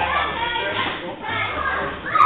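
Several people talking at once, their voices overlapping, around a boxing ring in a gym.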